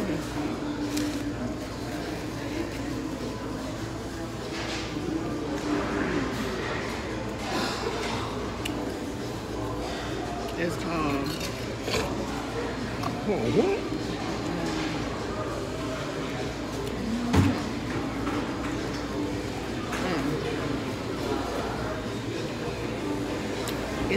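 Restaurant dining-room ambience: indistinct voices and murmurs, with occasional clinks of cutlery on plates and a sharper knock about seventeen seconds in.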